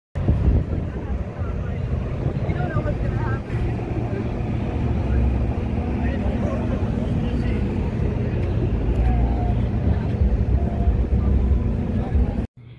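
Steady low drone of a trailer-mounted diesel generator running, with faint chatter from people waiting in line.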